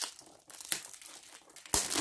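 Parcel packaging being handled and crinkled, in irregular rustles with a louder crackle near the end.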